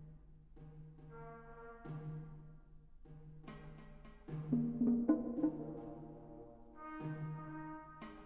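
A small orchestra plays an instrumental passage: brass over timpani, with repeated low notes and sharp attacks. It swells louder about halfway through, then eases back.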